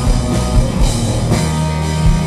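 Live rock band playing at full volume: distorted electric guitar over a drum kit keeping a steady beat of about two hits a second.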